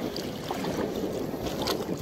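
Wind buffeting the microphone over the wash of small, choppy sea waves in the shallows.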